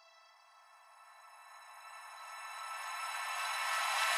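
Intro of an uplifting trance track: a sustained synth tone dies away, then after a moment of near silence a high noise sweep rises steadily in loudness, a riser building toward the beat.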